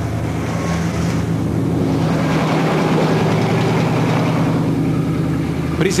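A vehicle engine running steadily at low revs, a constant low hum with street noise over it.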